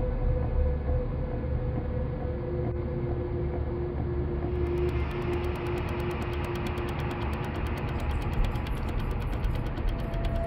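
Dark, droning horror-film score: a low rumble under long held tones, with a fast, even ticking pulse coming in about halfway through.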